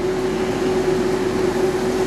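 Interior noise of a moving tour bus: steady engine and road rumble with a constant low hum, heard from inside the cabin.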